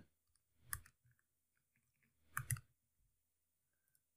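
Two short clicks from computer input, about a second and a half apart, over near silence: keys or a mouse button used to run code.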